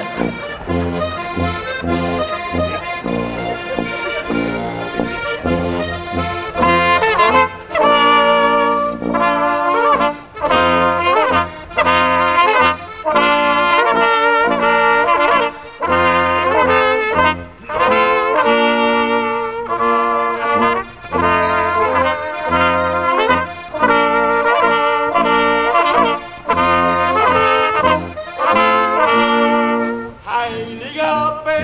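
Folk brass ensemble playing a tune: flugelhorn and trumpets in melody over steady tuba bass notes. It starts softer and becomes fuller and louder about seven seconds in.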